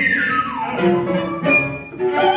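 Instrumental music from a small opera ensemble playing a contemporary score between sung lines, with one long falling glide in pitch over the first second, then held tones.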